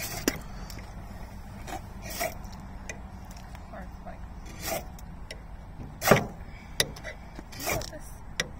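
Ferro rod scraped with a steel striker: a run of short, sharp rasping strikes at irregular intervals, throwing sparks onto fatwood shavings to light them. A low steady hum runs underneath.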